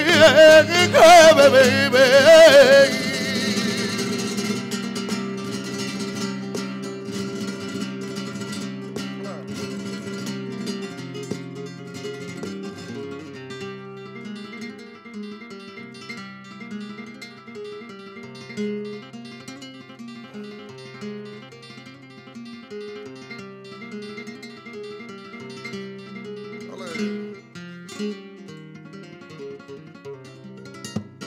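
A male flamenco singer ends a phrase on a loud, wavering, ornamented note for about three seconds. Then a flamenco guitar plays on alone, more quietly, in a picked solo passage.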